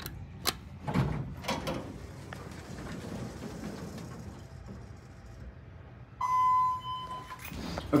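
ThyssenKrupp Classic (former Dover Impulse) elevator answering a hall call: a few clicks and the car doors sliding open, then about six seconds in a steady electronic tone lasting about a second.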